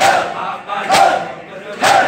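A crowd of men doing matam, beating their chests in unison with loud slaps just under a second apart, three strikes in all, while they chant a mourning refrain together between the strikes.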